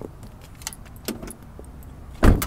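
Steady low rumble of a car with a few light clicks and a jingle of keys.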